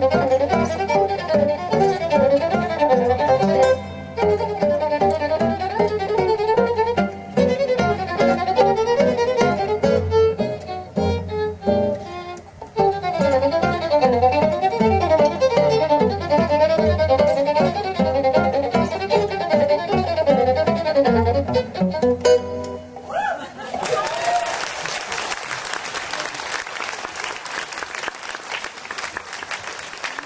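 Jazz violin playing a lively melodic line over acoustic guitar accompaniment. The music stops about three-quarters of the way through, and audience applause follows.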